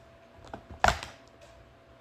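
Handling noise on a tabletop: a couple of light clicks, then one sharp knock just under a second in, over a faint steady hum.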